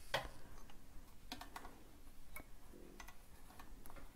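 Faint, irregular light clicks and ticks of hands working at the needle area of a four-thread overlocker that is not running, as one needle thread is taken out to set it up for three-thread overlocking.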